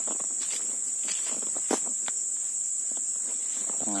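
Steady high-pitched drone of insects in tropical woodland, with a few soft steps through leaf litter and undergrowth.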